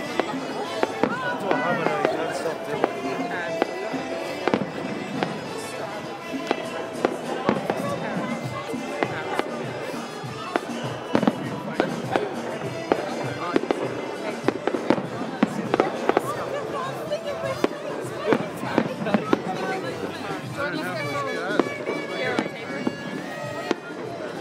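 Aerial fireworks going off: a continuous, irregular run of sharp bangs and crackles, several a second, over background music and voices.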